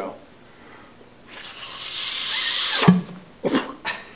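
A man blowing hard into a glass milk bottle: a rushing hiss of air that builds for about a second and a half, then ends in a sudden pop as the raised air pressure behind the hard-boiled egg forces it out through the bottle's mouth. Two brief sharp sounds follow.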